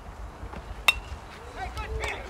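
One sharp, ringing crack about a second in as a pitched baseball meets bat or glove, followed by players' voices calling out.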